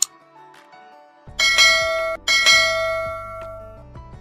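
A sharp mouse click, then two bright bell chimes about a second apart that ring on and fade away: the notification-bell sound effect of a subscribe-button animation. Soft background music runs underneath.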